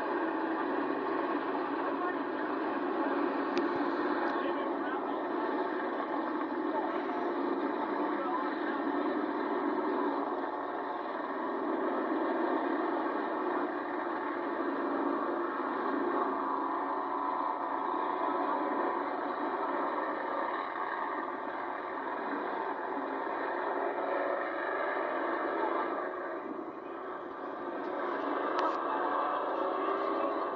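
Pack of pure stock race car engines running hard around a dirt oval: a continuous, dense engine noise that swells and eases as the cars go by, briefly quieter near the end.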